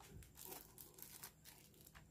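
Faint, scattered crinkles of the thin protective plastic film still on a Timemore Black coffee scale as a hand touches and presses down on the platform.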